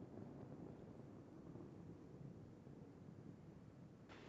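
Near silence: a faint, steady low noise haze.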